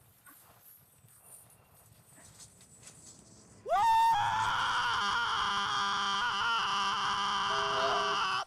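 After a few faint seconds, a young man's loud, high-pitched yell starts about four seconds in. It slides quickly up in pitch and is then held steady for over four seconds.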